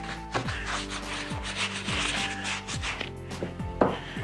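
A round wax brush scrubbing dark wax heavily into chalk-painted upholstery fabric, a quick run of repeated scratchy rubbing strokes. Background music plays underneath.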